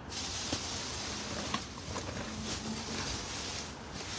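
Rustling and crinkling of plastic trash bags and handling noise as toys are gathered up, with a few light clicks.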